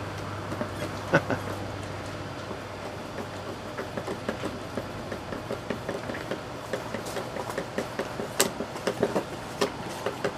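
Flat-blade screwdriver turning the screw of an old cable clamp on a metal thermostat box: small, irregular metal clicks and scrapes, with a few sharper clicks, over a steady background hiss.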